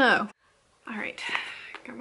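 Speech only: a child's high voice sliding down in pitch, a short break of silence, then a woman's soft, breathy talk.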